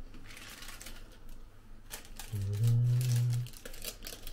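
Thin plastic film lid from a food tray crinkling faintly as it is handled, with small rustles and ticks. About two and a half seconds in, a low, steady hummed "mm" lasting about a second is the loudest sound.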